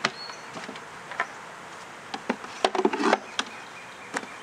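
Honeybees buzzing around the hives, with sharp knocks and clatter of wooden hive boxes being handled, thickest about two-thirds of the way through.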